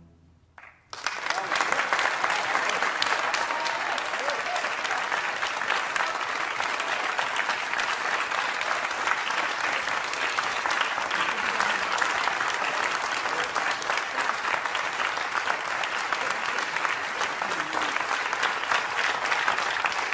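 Audience applauding, breaking out about a second in after a brief silence at the end of the music and continuing steadily.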